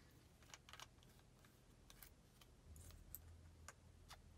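Faint, scattered small clicks and taps of a plastic vitamin bottle being handled and its cap opened, about seven in all, over near-silent room tone.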